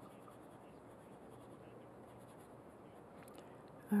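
Faint scratchy rubbing of a paintbrush working dark paint onto canvas.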